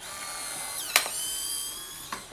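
Polaroid instant camera's motor whirring for about two seconds as it ejects the freshly exposed print, with a sharp click about a second in.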